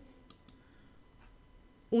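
A couple of faint computer mouse clicks.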